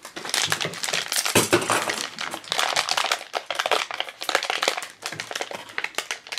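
A clear plastic bag being handled and crinkled by hand while a small collectible figure is unpacked: a dense, irregular run of small crackles and clicks.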